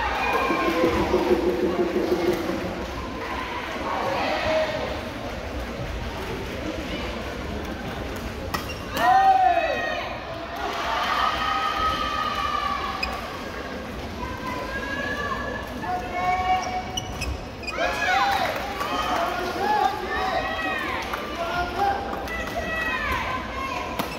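Voices and calls echoing in a badminton hall, with a few sharp hits from play on the courts.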